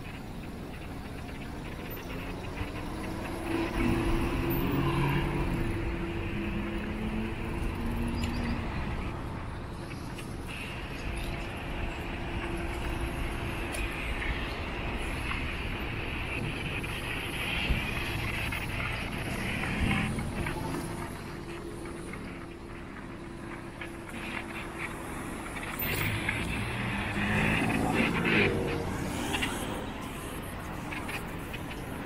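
Road traffic on a multi-lane street: a steady wash of car tyre and engine noise, swelling as vehicles pass close, loudest a few seconds in and near the end.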